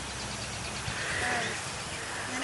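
Outdoor background noise with one short animal call about a second in.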